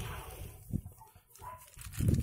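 Dry-erase marker drawing being wiped off a whiteboard by hand: faint rubbing in a few short strokes.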